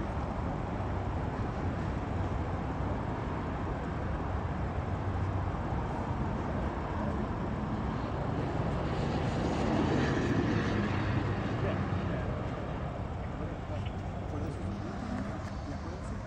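Steady low traffic rumble with indistinct, murmured voices. A louder rumble from a passing vehicle swells up about halfway through and fades away.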